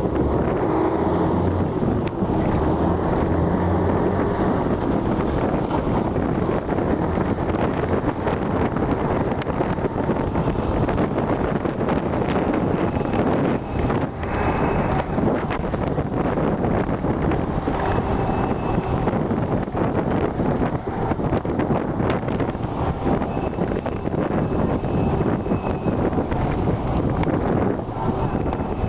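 Steady engine and road noise of a moving intercity bus, heard from inside the passenger cabin, with wind noise on the microphone.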